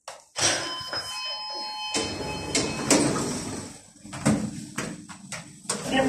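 Schindler 5400 lift's automatic sliding doors running, with an electronic chime of several steady tones about a second in, then a few sharp clicks.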